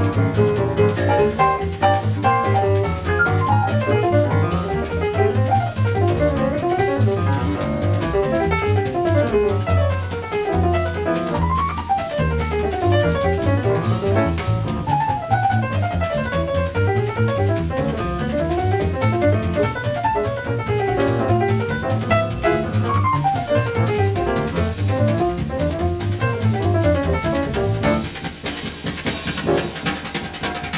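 Jazz piano trio recording: piano playing fast runs that rise and fall, over plucked double bass and a drum kit. The loudness dips briefly near the end.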